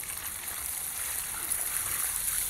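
Water poured from a plastic bucket in a steady stream, splashing onto an RC car chassis and the grass beneath it.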